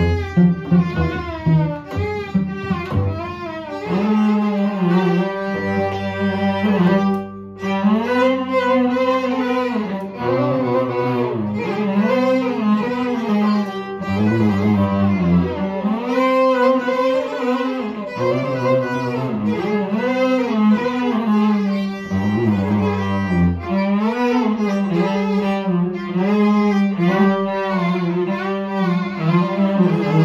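Violin and cello duet playing an Arabic song melody: the violin carries a sliding, vibrato-laden melody while the bowed cello holds long low notes beneath, after a run of quick short notes in the first few seconds.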